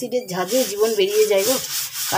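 A kitchen sink being scrubbed by hand, a repeated rubbing hiss of stroke after stroke. A woman's voice talks over it for most of the time.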